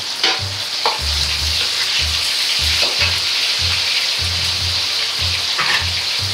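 Shimeji and shimofuri mushrooms deep-frying in oil heated to 180 °C in a wok: a steady, dense sizzle, with a couple of short clicks about a second in.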